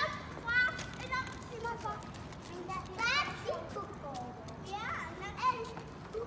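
Young children shouting and squealing high-pitched calls while playing, with sharp rising squeals about three seconds in and again near five seconds.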